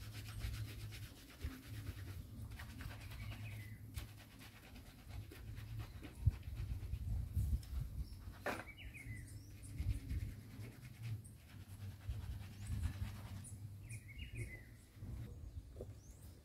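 A knife cutting and scraping an iguana carcass on a wooden board: faint clicks and rubbing. Three short, high, falling animal calls sound over it, spaced a few seconds apart.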